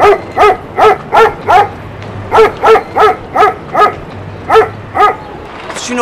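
A dog barking over and over, loud high-pitched yaps about three a second, in short runs with brief pauses between them.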